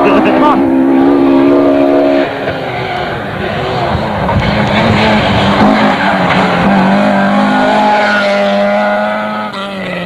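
Rally car engines at high revs as the cars drive flat out along the stage, the pitch climbing and dropping with gear changes and lifts off the throttle. The sound changes abruptly about two seconds in, when the footage cuts to another car.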